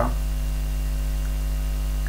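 Loud, steady electrical mains hum: a low drone with several fainter steady tones above it.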